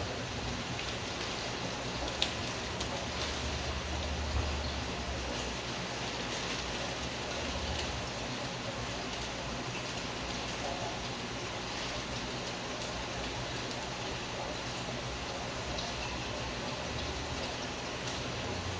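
Steady bubbling and trickling of aquarium water from air stones and filters, under a constant low hum of pumps.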